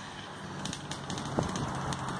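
Small fuel engine of a remote-control car running faintly from a distance as the car drives away, with a light click late on.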